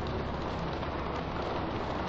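Arena audience applauding steadily, a dense even patter of clapping.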